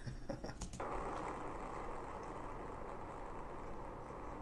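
A short laugh, then from about a second in a steady rushing noise: road and engine noise inside a patrol car travelling at speed on a freeway, from its in-car camera.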